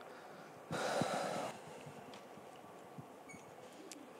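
A man's breath blown into a handheld microphone: one short puff of air about a second in, over faint room tone with a few small clicks.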